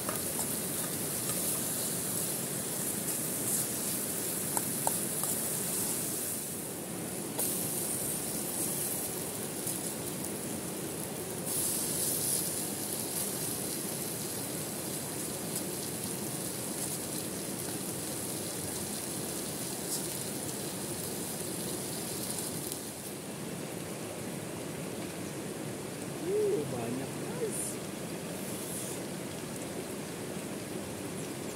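Sliced onions and chillies sizzling in a camping frying pan on a gas canister stove, over a steady hiss of rain and running river water. The bright sizzle drops away and comes back a few times.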